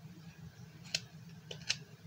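Hand carving knife cutting into a butternut wood block: three short crisp snicks, the first about a second in and the other two close together near the end, over a low steady hum.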